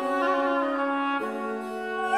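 Baroque oboe with a bassoon beneath it playing long held notes; the lower note steps down about a second in.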